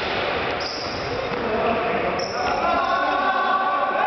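Indoor futsal being played: ball kicks and running footsteps knock on the sports-hall floor, with players' voices calling out in the echoing hall.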